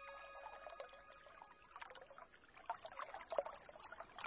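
Faint trickling water with an irregular patter of small drips and splashes, as of a stream, following the tail of fading music.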